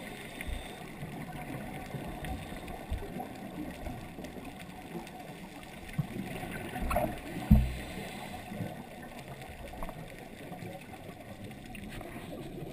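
Muffled underwater noise picked up through a sealed action-camera housing, with a faint gurgle and a few low knocks, the loudest about seven and a half seconds in.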